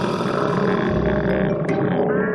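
Cartoon sound effect of a loud, long stomach growl, a low rumbling gurgle from a hungry child who has skipped meals.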